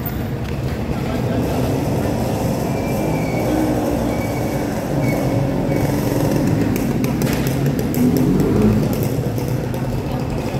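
Busy city street ambience: steady traffic and motorcycle engines running, mixed with the chatter of many people, and a vehicle swelling louder about eight seconds in.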